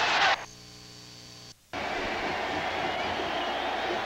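Stadium crowd noise in an old TV broadcast cuts off abruptly, leaving about a second of steady low electrical hum and a short dropout, the sign of an edit in the recording. The crowd noise then comes back, a little quieter, as a steady wash.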